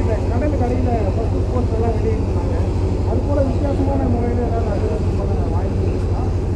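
Indistinct chatter of several voices in the background over a steady low hum.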